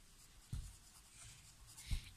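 Faint scratching of a pencil on a textbook page as words are marked, with two soft low thumps, about half a second in and near the end.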